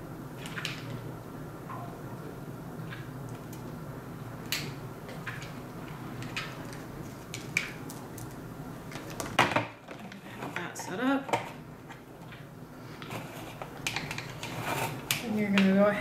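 Scattered small clicks and rattles of a power cord and plastic incubator parts being handled, over a steady low hum that cuts out a little past halfway.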